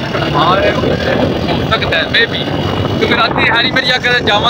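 Wind blowing across the phone's microphone as a steady low rush, with a man talking over it in bursts.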